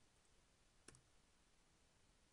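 Near silence: faint room tone, with one short click about a second in.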